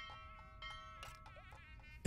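Faint background film music: thin high held tones, some of them wavering in pitch.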